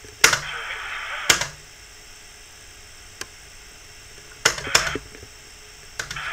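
Sharp single clicks: one just after the start, one about a second in, a faint one midway and a close pair near the end. Under the first second and a half runs the game broadcast's crowd noise, which then cuts off as the playback is paused.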